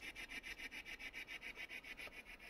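Spirit box sweeping through radio frequencies: faint static chopped into a steady, rapid pulse of about nine beats a second.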